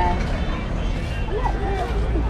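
Street ambience: people's voices talking over a steady low rumble of road traffic.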